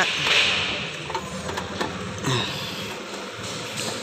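Wire mesh scraping and rustling against the car's plastic cowl panel as it is folded and pressed into the air intake by hand. The sound is loudest at the start and then settles into lighter scratching with a few small clicks.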